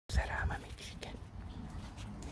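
Soft whispered speech for about half a second, then a low background with a faint click about a second in.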